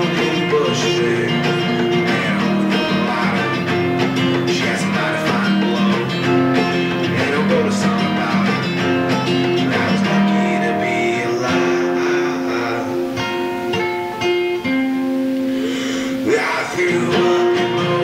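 A guitar playing a song, with strummed chords and held picked notes.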